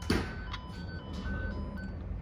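Fluke Networks Pro3000 probe sounding the tone generator's alternating tone picked up from the cable: a beep that switches between a higher and a lower pitch about twice a second. A sharp click sounds just after the start.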